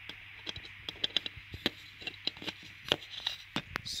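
A string of small irregular plastic clicks and taps as an electric scooter's amber rear reflector is handled and fitted under the lip of its black plastic holder.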